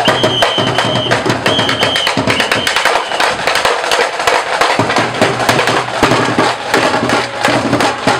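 Drum cadence with rapid, continuous drum strikes accompanying a marching drill team, with three short whistle blasts in the first three seconds.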